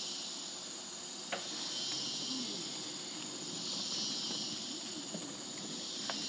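Rainforest insect chorus: a steady, dense high buzzing with one thin high whine held above it. A single click a little over a second in.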